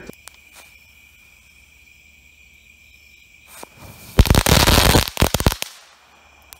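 Brothers Fireworks Jumbo Crackling Ball going off: about four seconds in, a dense, loud run of sharp crackling pops that lasts about a second and a half, with a single click shortly before it.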